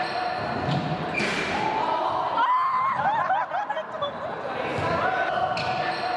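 Sounds of an indoor basketball game in an echoing sports hall: shoes squeaking on the court floor in quick chirps near the middle, a few knocks of the ball, and players calling out.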